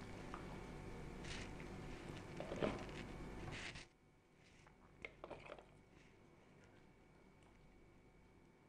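Metal ladle scooping thick con carne of mince and kidney beans out of a slow cooker pot: faint scrapes and soft squelches over quiet room noise. About four seconds in, the background drops away to near silence, leaving only a few faint scrapes.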